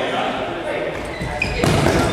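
A futsal ball being kicked and bouncing on a wooden gym floor, with one loud impact near the end that echoes around the large hall.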